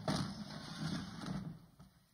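A chair being shifted across a wooden stage floor and sat on: a sudden scraping, knocking rumble that starts at once and dies away after under two seconds, mixed with handling noise from a handheld microphone.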